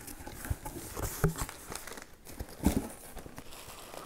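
Packing paper crinkling and a cardboard box rustling as hands rummage inside it, with scattered small clicks and knocks.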